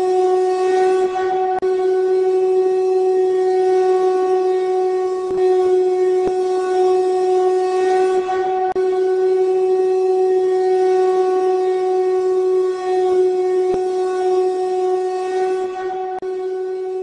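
A loud, horn-like drone held on one unchanging pitch with its overtones.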